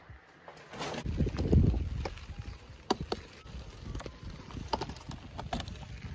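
Rustling of a large plastic carrier bag and handling of the phone, an uneven low rumble with a few sharp clicks, starting about a second in.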